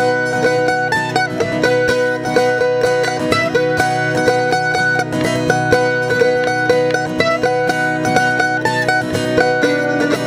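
Mandolin picking a fast bluegrass melody, with an acoustic guitar strumming the rhythm underneath.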